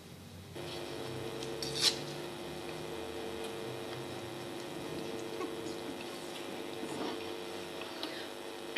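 Quiet hall room tone with a steady two-note electrical hum that comes in about half a second in, typical of a conference microphone and PA system left open. There is a brief rustle or click near two seconds.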